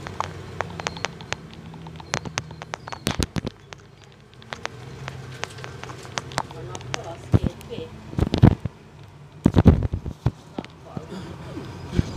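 Inside a moving Alexander Dennis Enviro400 double-decker bus: a steady low engine drone under frequent irregular sharp clicks and rattles, with passengers' voices, louder about two-thirds of the way through.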